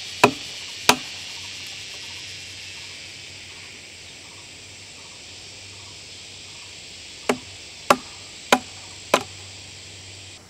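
Wooden mallet striking timber: two sharp knocks at the start, a pause, then four more strikes in quick succession, a little under two a second, near the end. A steady high drone of insects runs underneath.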